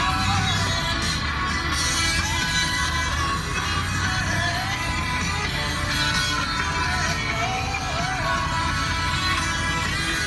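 A song with singing playing on the truck's radio, steady throughout.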